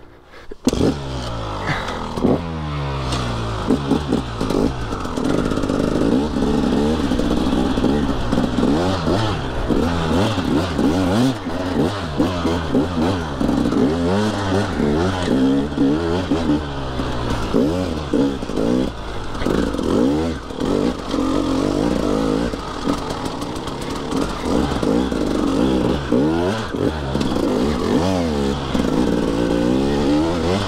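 Enduro dirt bike engine being ridden off-road, its pitch rising and falling continuously as the throttle is worked. It picks up about half a second in after a brief lull.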